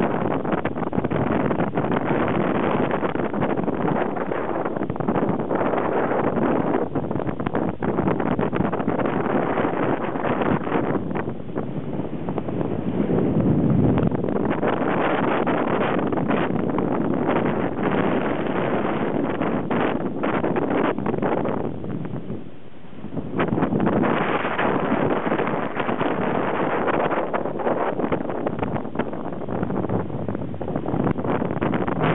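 Strong wind rushing over the microphone aboard a sailboat under sail, a steady roar with two brief lulls, about a third of the way in and again about three quarters through.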